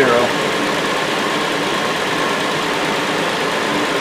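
2007 Hyundai Sonata's 3.3-litre V6 idling steadily under the open hood with the A/C compressor engaged.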